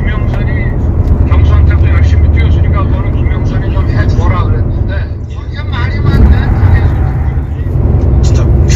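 A man's voice on a recorded phone call, played back with a heavy, steady low rumble running beneath the speech.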